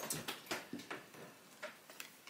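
Oracle cards being handled and laid down on a table: a run of soft clicks and taps in the first second, then a couple of isolated ticks.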